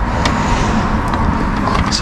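Hands rummaging through a tangle of cables and discarded electronics in a large bin, giving a few small clicks and knocks over a steady background rush.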